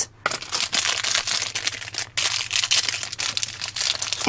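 Crinkly plastic blind-bag wrapper being crumpled and torn open by hand: a dense crackle with a short break about two seconds in.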